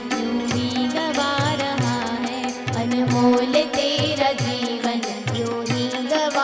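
Instrumental passage of a devotional bhajan: tabla playing a steady beat under an electronic keyboard melody, over a sustained held drone note.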